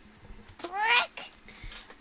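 A single short vocal cry, about half a second long and rising steadily in pitch, a little over halfway in.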